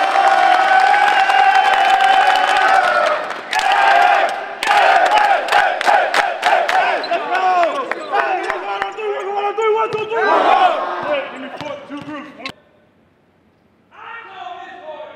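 A team of basketball players shouting together in a long held yell, then clapping and cheering. They finish with a short team chant shouted in unison about ten seconds in, and the sound cuts off suddenly soon after.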